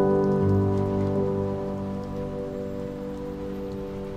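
A sustained piano chord ringing and slowly fading, with a low bass note added about half a second in.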